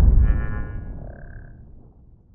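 Logo intro sound effect: the low rumble of a deep boom fading away over about two seconds, with a brief high shimmering chime and a short ringing tone over it in the first second and a half.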